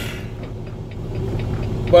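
Semi truck's Paccar MX-13 diesel engine running, a steady low hum heard inside the cab.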